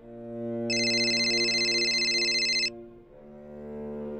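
A mobile phone ringing: a loud, high, fluttering ringtone that starts just under a second in and stops about two seconds later, over cello-led film score music.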